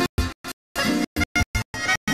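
Live sevdah folk band, with accordion, acoustic guitar and keyboard, playing. The sound keeps cutting out to silence, leaving short fragments several times a second: audio dropouts.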